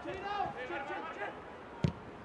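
Players' faint shouts on the pitch, then a single football kick about two seconds in as the ball is played into the box.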